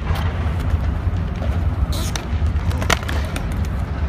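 Skateboard wheels rolling on concrete in a steady low rumble, broken by sharp clacks of the board hitting the ground, the loudest about three seconds in.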